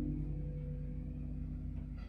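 Semi-hollow electric guitar chord ringing on and slowly fading away, the last notes of an improvised jam.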